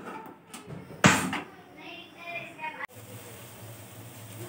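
A sharp knock with a short clatter about a second in, then, after a click near the end, a steady low sizzle as chopped onions begin to fry in oil in an aluminium pot.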